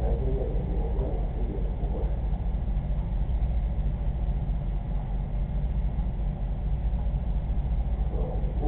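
A steady low rumble that stays even throughout, with no distinct events.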